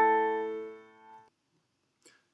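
Piano sound from a digital keyboard: the piece's final two A notes, one played in each hand, ringing together and fading out about a second in.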